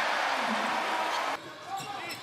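Basketball arena sound: a steady crowd noise that cuts off suddenly a little past halfway at an edit, leaving quieter court sound.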